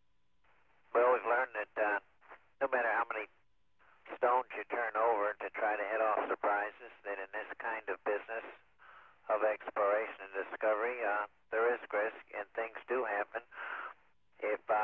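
A man speaking over the shuttle's air-to-ground radio link, his voice narrow-band and telephone-like.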